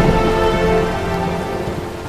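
Rain and low thunder rumble under a sustained musical score of held tones, slowly fading out.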